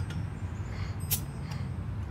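Crown cap prised off a glass hard-cider bottle with a bottle opener: one short, sharp hiss-pop of escaping gas about a second in, over a steady low background hum.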